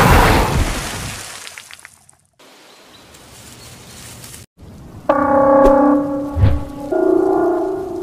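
A big water splash as a huge sea reptile breaches, fading away over about two seconds. After a quiet stretch, held pitched tones begin about five seconds in and change once near seven seconds.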